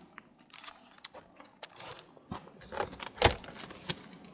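Scattered small clicks and rattles, then a sharp knock about three seconds in and another just before the end, as the latch and handle of a shed's double door are worked open.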